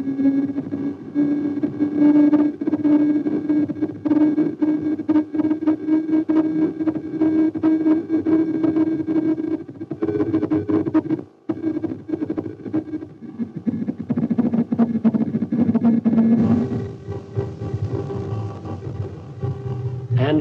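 Doppler audio return from an AN/TPS-25 ground surveillance radar, heard through the set's loudspeaker: a steady buzzing tone with a rapid flutter, made by a moving target in the radar beam. It drops out briefly about halfway through and turns lower and hissier after about three quarters of the way.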